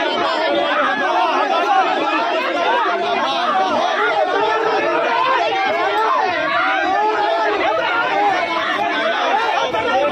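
Crowd of men talking over one another in a heated argument: a dense, steady babble of overlapping voices.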